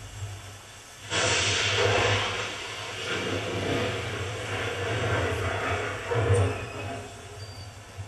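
A loud rushing sound effect from a film's soundtrack that starts abruptly about a second in and slowly dies away, heard through cinema speakers and recorded by a camcorder, over a steady low hum.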